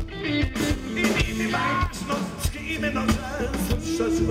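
A rock band playing live: a man singing over electric guitar and a drum kit.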